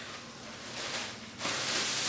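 A clear plastic produce bag of grapes rustling and crinkling as it is handled, louder in the second half.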